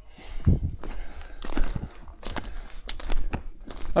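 Footsteps on a forest floor, irregular crunching and crackling of twigs and needle litter underfoot, with scattered sharp snaps.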